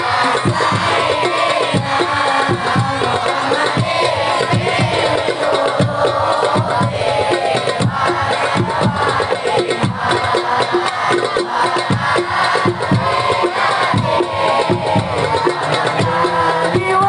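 A hadroh ensemble of frame drums beating a fast, dense rhythm while a crowd of voices sings sholawat along.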